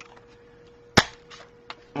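A handheld paper punch snapping once through cardstock: one sharp click about a second in, followed by a few faint smaller clicks as the punch is released.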